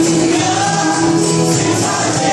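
A small vocal group singing a gospel song in harmony, accompanied by acoustic string instruments.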